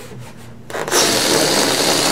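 Hands rubbing and squeezing an inflated latex balloon: a loud, scratchy rubbing noise that starts just under a second in and keeps going.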